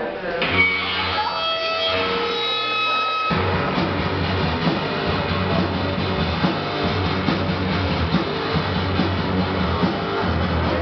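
Live punk rock band: a few held electric guitar notes ring out for about three seconds, then the whole band comes in loud with distorted guitar, bass and drums.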